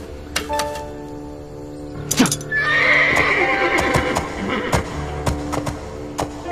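A horse whinnies once, a long call starting a little over two seconds in, over background music; hoofbeats follow as the horse sets off.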